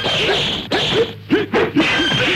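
Kung fu fight-scene sound effects: a fast run of swishing blows and kicks with short shouts from the fighters, several to a second.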